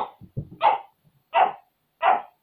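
A dog barking in the background: two short barks a little under a second apart.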